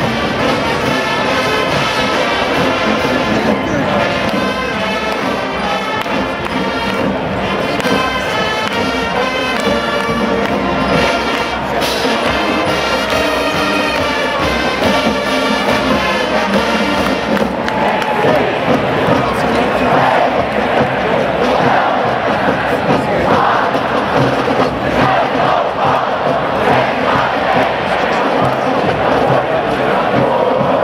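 A university marching band's brass section plays for about the first half. Then the music gives way to a stadium crowd cheering and shouting.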